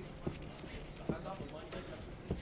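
Three short, sharp thuds from two kickboxers sparring at range in the ring, with faint shouting from the corners underneath.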